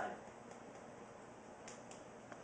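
Faint soft taps of fingertips against the side of the other hand, EFT tapping on the karate-chop point, with two light clicks near the end over a quiet room.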